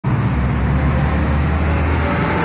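Steady low rumble of a vehicle engine running close by, over a haze of street traffic noise.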